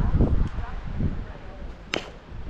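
Wind buffeting the microphone in low rumbles, then one sharp crack of an impact shortly before the end.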